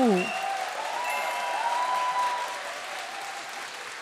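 A church audience applauding warmly and steadily, with a brief vocal exclamation at the very start. The clapping eases off over the last second or so.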